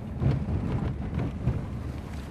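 Low, uneven rumble of a car heard from inside its cabin while it is being driven.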